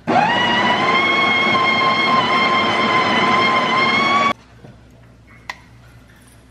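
Built-in burr grinder of a Breville touchscreen espresso machine grinding coffee beans into the portafilter: a steady motor whine for about four seconds, rising slightly in pitch near the end, then cutting off suddenly.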